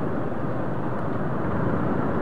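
Steady rumble of slow motorcycle, scooter and car traffic in a jam, engines idling and creeping, with no single sound standing out.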